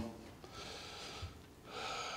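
A man drawing audible breaths close to a lapel microphone during a pause in his talk: two soft breaths, the second starting near the end.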